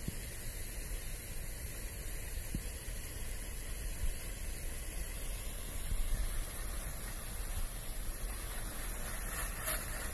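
Steady hiss of a low-pressure softwash spray stream, with low wind rumble on the microphone. There is one brief sharp noise near the end.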